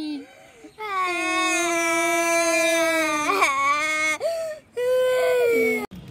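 A child wailing in two long, drawn-out cries. The first lasts about three seconds, with a brief jump in pitch near its middle. The second, shorter cry ends just before the close.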